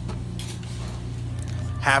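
A steady low hum with a short clatter about half a second in; a man's voice starts near the end.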